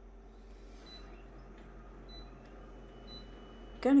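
Office copier's steady low hum, with a few faint short high beeps about a second apart from its touchscreen keys.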